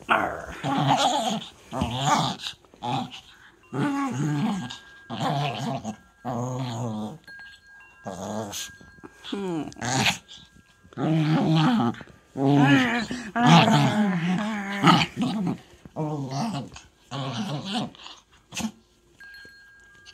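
Small Maltese dog growling in play, in repeated bursts of a second or less with short pauses between, some of them wavering in pitch.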